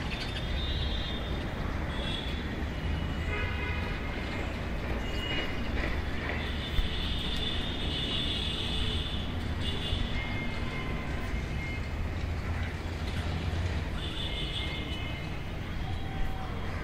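Birds chirping and calling on and off over a steady low rumble, with one sharp click about seven seconds in.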